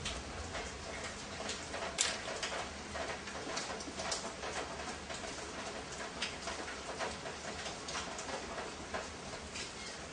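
A spark plug being threaded into a motorcycle cylinder head by hand with a spark plug wrench: irregular light metallic clicks and scrapes, with one sharper click about two seconds in.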